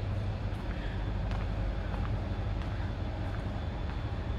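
A steady low hum, with faint clicks about every two-thirds of a second.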